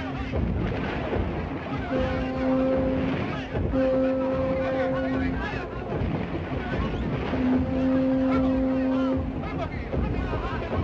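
A low horn blown in three long blasts, each a second or more, over shouting voices and breaking surf.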